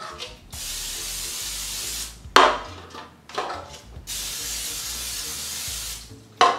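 Aerosol non-stick cooking spray hissing in two long, even bursts, coating the baking pans. Between the bursts comes a sharp knock and some smaller clatter, the loudest moment.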